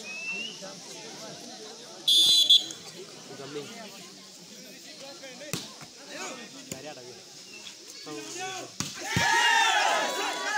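A referee's whistle blows once, short and high-pitched, about two seconds in. A few seconds later a sharp slap of a hand striking a volleyball, and near the end spectators shout and cheer over steady crowd chatter.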